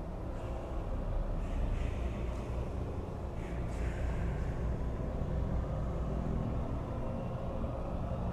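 Steady low background rumble, with a few faint soft scratches in the first half as a dry brush is worked over the miniature's rockwork base.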